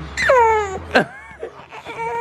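Young infant fussing: one high wail falling in pitch, then a short sharp cry about a second in. He is fussing at being disturbed just after waking from a nap.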